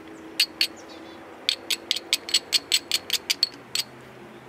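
Sharp, light clicks of a small tool on the edge of a stone biface, flint-knapping edge work to prepare a striking platform: two clicks, then after a pause a run of about a dozen quick clicks, roughly five a second.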